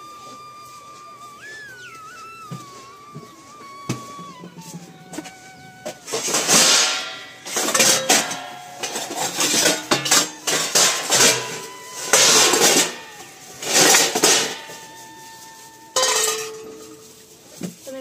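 Background music with a thin, high held melody, then from about six seconds in a run of loud clatters, about six in all, as steel bowls and pots are moved about and lifted from a plastic crate.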